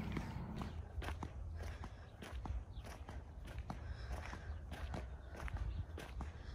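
Flip-flops slapping on asphalt with each step of a walk, about two steps a second, over a steady low rumble.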